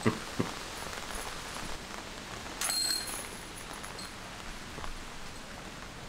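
Metal chains of a disc golf basket jingling briefly about two and a half seconds in as a putted disc strikes them, over a steady hiss of rain.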